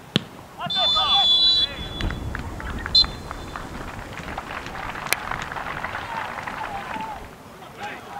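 Referee's whistle blowing for half time: a long blast about a second in and a short one at about three seconds, with players shouting on the pitch. Scattered clapping from a small crowd follows.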